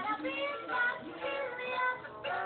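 A toddler's electronic musical activity table playing its recorded children's song, a sung melody over a simple tune.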